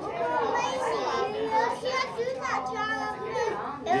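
Many children's voices talking and chattering over one another in a busy classroom, with no single clear voice on top.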